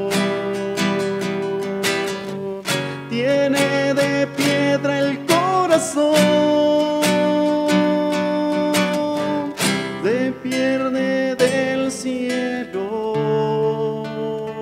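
A man singing a slow Spanish liturgical song, holding long notes and sliding between pitches, over his own strummed nylon-string classical guitar.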